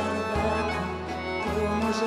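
Instrumental passage of a Greek popular song, with bowed strings over a bass line that changes note twice.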